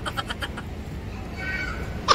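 A woman's laughter trailing off in quick pulses, then a low steady rumble with a faint high-pitched sound about one and a half seconds in.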